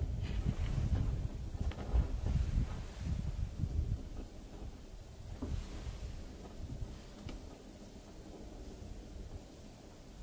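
Wind buffeting the microphone, an uneven low rumble that is strongest for the first four seconds and then dies down. A couple of faint rustles follow.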